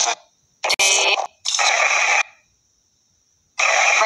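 Necrophonic ghost-box app on a phone putting out three short bursts of chopped, radio-like noise and audio fragments. Each burst cuts in and out abruptly, with near silence between them.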